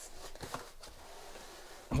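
Faint rustling, scraping and light knocks of a cardboard box being tipped over and handled on a wooden workbench.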